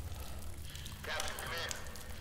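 Dark film sound design: a low steady rumble under a short pitched, voice-like cry about a second in.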